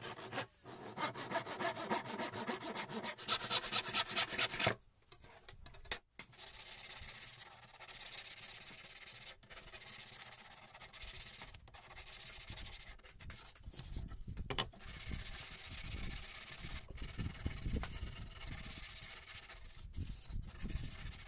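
Hand saw cutting wood in quick back-and-forth strokes that stop after about five seconds, followed by steady hand sanding of a wooden soap holder.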